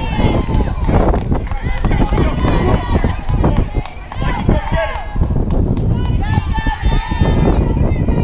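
Players' voices shouting and calling out across a softball field, high and sing-song, over a steady low rumble and scattered short clicks.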